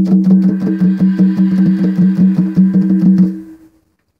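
A guitar chord strummed rapidly and evenly, about seven or eight strokes a second, ringing as one steady chord until it stops about three and a half seconds in.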